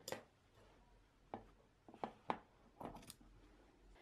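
Scissors snipping through a fabric binding strip: a handful of quiet, sharp snips spread over about three seconds.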